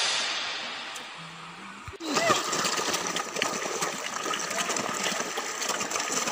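Background music fading out, then about two seconds in, live sound cuts in: steady splashing of a large shoal of fish thrashing at the water surface as they are fed.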